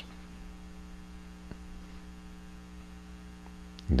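Steady electrical mains hum on the recording, with a faint tick about one and a half seconds in.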